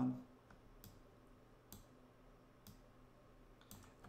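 Computer mouse clicking, a few single clicks about a second apart, over quiet room tone.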